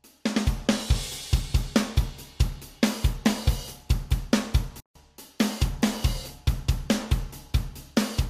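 A recorded acoustic drum kit playing a beat: kick drum, snare and hi-hat/cymbals. It is heard first with the multiband compressor bypassed, then with gentle compression on its mid-range band. The playback breaks off briefly a little before the middle and starts again.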